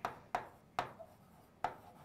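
A stylus tip tapping and scratching on the screen of an interactive writing board as a word is handwritten, giving four or so sharp ticks with faint scraping between them.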